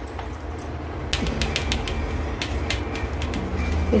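Metal spoon scraping and tapping against a plastic tray while thick burfi mixture is spread and pressed flat: a run of sharp clicks from about a second in, over a low steady hum.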